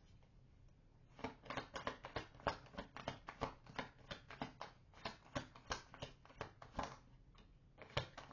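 A deck of tarot cards shuffled by hand: a quick run of soft card clicks, about five a second, starting about a second in and stopping a second before the end.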